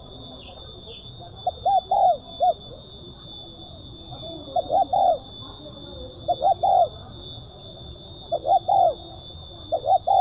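Spotted dove cooing: a short phrase of two to four quick, arched coos, repeated about every two seconds, five times.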